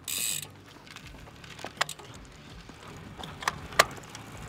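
Road bike setting off: a short scuffing hiss at the start, then a few sharp mechanical clicks, typical of cleats snapping into clipless pedals and the freehub ratchet ticking. The loudest click comes near the end.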